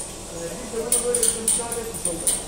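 A man speaking Turkish; little else stands out under the voice.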